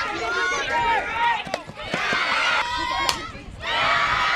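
Softball spectators and players shouting and cheering over one another, with a single sharp crack about three seconds in.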